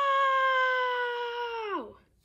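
A person's long, high-pitched cry of "Nooo!", held on one pitch for nearly two seconds, then falling in pitch as it trails off near the end.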